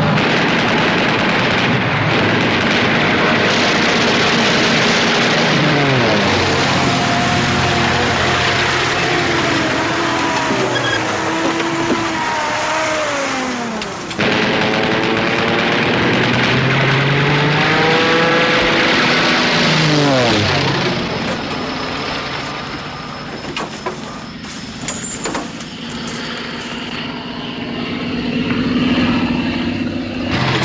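Motor vehicle engine running hard under way, its pitch climbing and then dropping steeply twice, near the middle of the stretch. It settles lower and quieter near the end.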